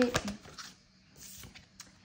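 Faint rustling of a deck of oracle cards being handled, then a card laid on a tabletop with a light tap near the end.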